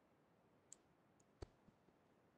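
Near silence broken by a few faint, sharp clicks, the loudest about one and a half seconds in.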